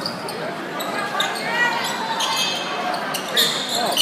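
Basketball game sounds on a hardwood gym court: the ball bouncing, short high sneaker squeaks, and voices from players and spectators.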